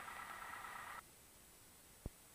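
Faint steady hiss with a low electronic hum from the cockpit audio feed, cutting off abruptly about a second in to near silence.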